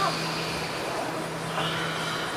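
A steady low hum under even room noise, with a brief spoken word right at the start.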